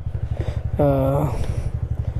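TVS Ntorq 125 Race XP scooter's single-cylinder engine idling at a standstill, with a steady, fast low pulse.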